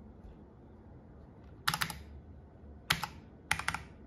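Keys on a computer keyboard's numeric keypad being pressed, used as Windows Mouse Keys to move and click the cursor. There is a quick group of clicks just under two seconds in, a single click about three seconds in, and a few more just after.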